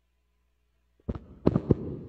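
Microphone handling noise: a sharp knock about a second in, then a few heavy thumps and a rumbling rustle as a microphone is taken off its stand and moved.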